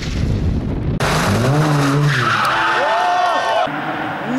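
Rally car on a wet tarmac track with wind rumbling on the microphone. After a sudden cut about a second in come rising and falling engine notes, with voices over them.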